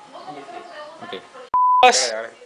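A single steady bleep tone, about a third of a second long, cut in sharply with silence around it like an edited-in censor bleep, about a second and a half in. A loud voice follows it at once.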